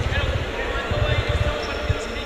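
Futsal ball bouncing and being kicked on an indoor court during the players' warm-up: irregular dull thumps echoing in the sports hall, with voices murmuring behind.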